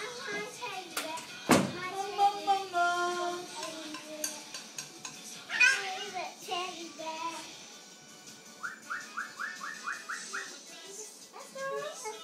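A young child's voice singing and shouting over music, with one loud thump about a second and a half in. Later comes a quick run of short rising chirps, about five a second.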